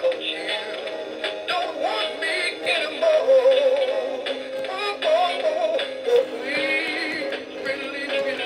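A Gemmy Rocky Rainbow Trout animatronic singing fish playing its song: a recorded voice singing over a music backing, thin and without bass from the toy's small built-in speaker.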